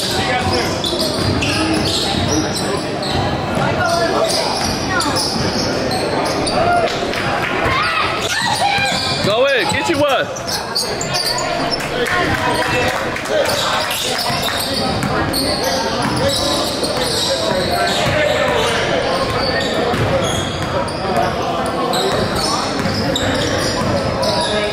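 Basketball bouncing on a hardwood gym floor during play, with indistinct voices of players and spectators echoing in the hall.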